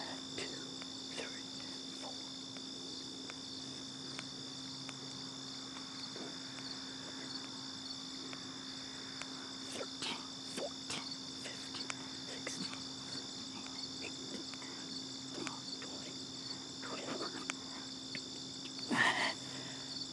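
Steady high-pitched chorus of insects in grass, without a break. Over it come faint scattered short sounds from a man doing push-ups on the grass, with a louder one near the end.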